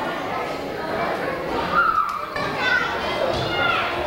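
Crowd of guests chattering in a large hall, several voices overlapping, with high-pitched children's voices among them.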